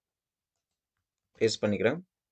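Dead silence for over a second, then a voice speaking a short phrase near the end.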